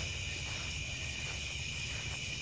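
Steady chorus of night insects, a continuous high-pitched trilling.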